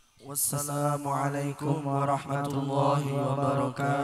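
Unaccompanied male chanting, held on a steady, level pitch in long drawn-out syllables, with no drums playing.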